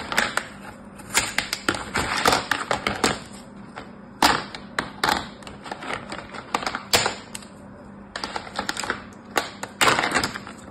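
Plastic sand moulds and tools clicking and clattering against each other and a plastic tray while kinetic sand is scooped and packed into a mould, with softer scraping between the irregular sharp taps.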